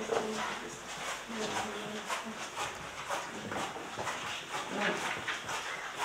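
Indistinct low chatter of several people, in short broken snatches, with scattered small knocks and shuffling as people move about the room.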